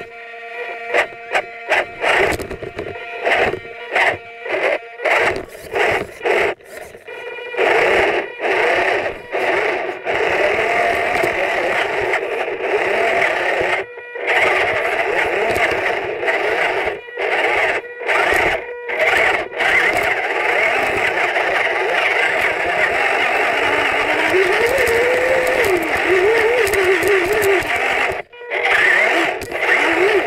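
Small electric motor and gearbox of a Losi 1/24 Micro Rock Crawler whining, picked up by a camera riding on the truck. For the first several seconds it runs in short stop-start bursts, then almost without a break, cutting out briefly about halfway and again near the end.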